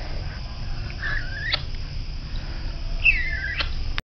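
A kitten mewing twice, two thin high-pitched calls about two seconds apart, each dipping in pitch and then sweeping sharply up at its end.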